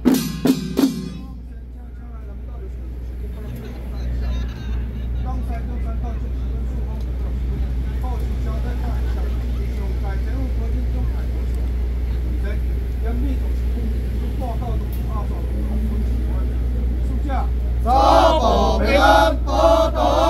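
Ritual troupe's handheld drums struck a few times, then a lull of crowd murmur over a low hum; near the end the troupe's chanting starts again with drum strokes.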